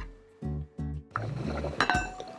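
Glass lid set down on a clay soup pot, with a ringing clink near the end, over background music.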